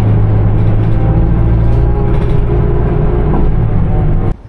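Background music of loud, sustained low drone tones, steady throughout.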